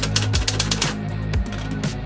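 Typewriter keys striking in a quick run of clicks that thins out after about a second, over music with a steady low bass.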